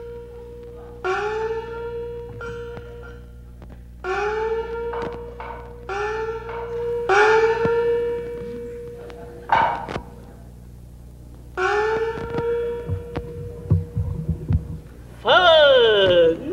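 Chinese opera small gong (xiaoluo) struck five times, each stroke rising in pitch as it rings on. A few sharp knocks and low drum thuds fall between the later strokes, and a voice begins intoning right at the end.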